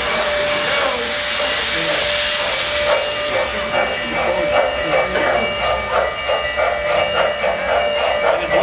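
Model Norfolk & Western J-class 4-8-4 steam locomotive running on a three-rail layout, its onboard sound system giving a steady steam hiss, then rhythmic chuffing at about three chuffs a second from about three seconds in as it passes close by.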